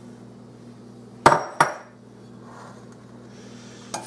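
Two sharp knocks about a third of a second apart: kitchenware striking the glass mixing bowl while the flour-and-sugar mixture is emptied over the blackberries.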